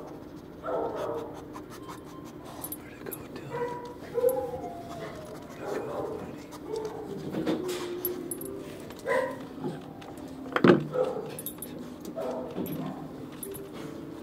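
A dog panting and whimpering softly in short, sliding whines, with one sharp knock about ten and a half seconds in.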